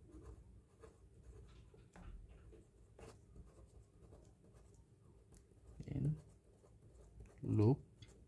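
Pen writing on paper: faint, short scratching strokes of the pen tip. Two brief murmured vocal sounds come near the end, louder than the writing.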